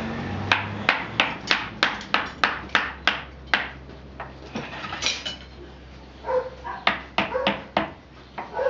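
Hand hammer striking the iron tyre of a wooden cart wheel on an anvil: about ten ringing metallic blows at roughly three a second, a pause, then a few more quick blows near the end.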